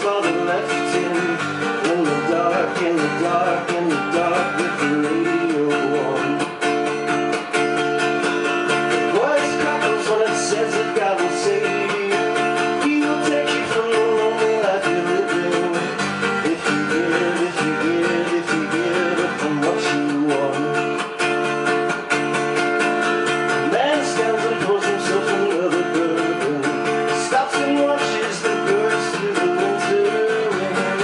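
Acoustic guitar strummed steadily with a man singing over it, a live performance heard through a room microphone.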